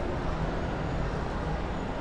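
Steady background din of a busy indoor shopping mall, a low even rumble with no single event standing out.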